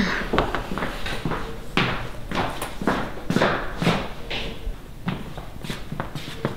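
Footsteps of people walking across a hardwood floor: a string of irregular knocks, about two a second.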